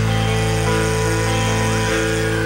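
Rock band playing live: a chord held steady on electric guitar over a sustained bass note, with a short rising glide near the end.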